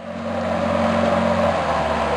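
Outboard motor of an inflatable boat running steadily under way, with the rush of water and air around it.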